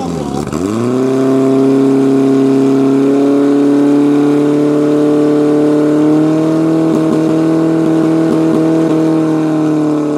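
Fire-sport portable pump engine running at full revs while pumping water to the hose jets. Its pitch dips sharply at the start, climbs back within about a second and holds high and steady, then begins to fall near the end.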